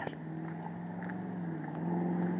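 A vehicle engine running steadily, a low hum that grows a little louder near the end.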